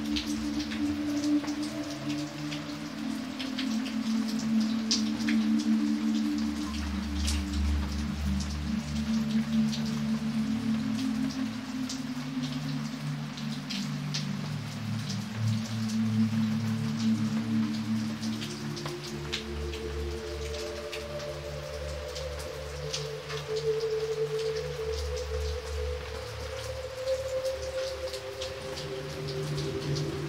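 Steady rain falling on pavement, with individual drops splashing sharply now and then. Under it, slow, soft music of long held low notes that change gradually.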